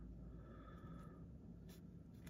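Near silence: room tone with a faint steady hum and one soft click near the end.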